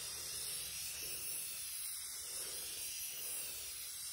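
Aerosol can of Rust-Oleum Painter's Touch 2X yellow spray paint hissing steadily as the nozzle is held down in one continuous spray.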